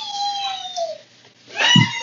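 A single high-pitched vocal cry, falling in pitch and lasting under a second.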